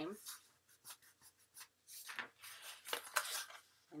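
Cardstock sliding and rubbing against a cutting mat and against itself as it is folded corner to corner and pressed flat by hand: a string of short papery rustles and swishes.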